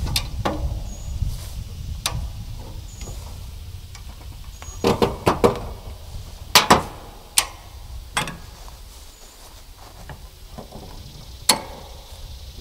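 Farm jack (high-lift style) being levered up under a heavy load: a run of sharp metallic clicks and clanks at irregular intervals as its climbing pins pop out of one hole and into the next on the steel upright bar, with a quick cluster about five seconds in.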